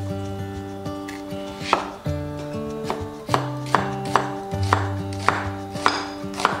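A knife coarsely chopping vegetables on a wooden cutting board: about seven crisp strokes, the first about two seconds in, then a steady rhythm of roughly two a second.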